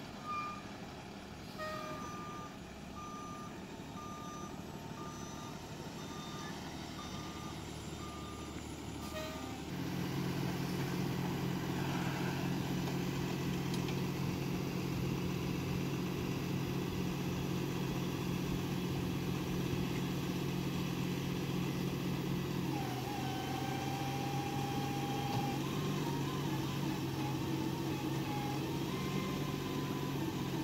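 Flatbed tow truck's reversing alarm beeping about once every 0.7 s while it backs up, stopping about nine seconds in. The truck's engine then steps up to a steady, higher speed, driving the hydraulics as the rollback bed tilts down to the ground, with a wavering whine joining in near the end.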